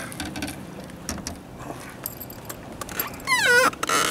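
Hooked spotted bass splashing and thrashing at the water's surface beside the boat as it is landed, with scattered sharp clicks and rattles. About three seconds in, a short, high cry rises and falls in pitch.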